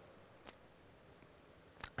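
Near silence: room tone, with a faint click about half a second in and two more close together near the end.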